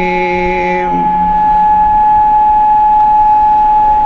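A man's recited note held through loudspeakers ends about a second in. It gives way to a steady, high-pitched whistle of public-address feedback from the microphone, which rings on for about three seconds.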